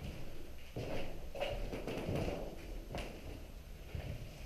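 Footsteps on an old wooden floor inside an empty room, a series of irregular knocks and low thuds.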